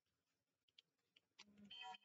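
Near silence: room tone with a few faint clicks, and a brief faint pitched tone just before the end.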